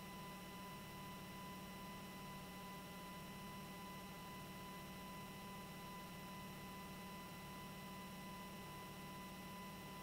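Faint, steady electrical hum in the audio line, with a thin, steady high tone above it, unchanging throughout.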